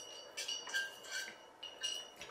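A drinking tumbler with a straw clinking about four times as it is handled and drunk from, each clink ringing briefly.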